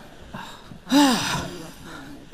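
A woman's short, breathy vocal exclamation about a second in, its pitch rising then falling, with a fainter breathy sound just before it.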